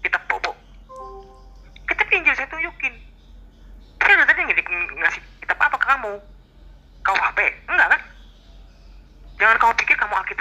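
Voices talking in spells over a Zoom video call, with a short steady tone about a second in and a faint low hum underneath.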